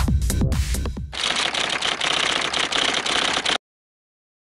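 Electronic dance music with a heavy bass beat ends about a second in. Then comes a rapid typewriter clatter, like a typing sound effect, for about two and a half seconds, cutting off suddenly.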